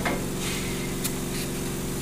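Steady low machine hum made of several fixed pitches, with a faint click about a second in.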